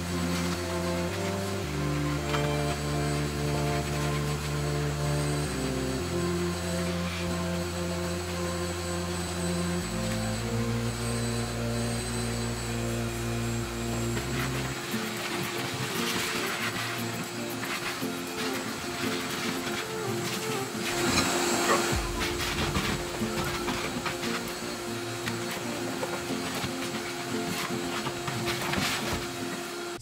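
Background music with slow-changing bass notes laid over a shop vacuum running steadily as it sucks debris from carpeted trunk floor and the spare-wheel well, with scattered clicks and knocks from the nozzle and debris in the middle.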